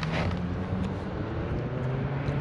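Steady low hum of a running vehicle engine over car-park background noise.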